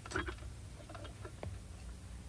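A few faint, light clicks and taps: a quick cluster at the start, then several sharper single ticks about a second in.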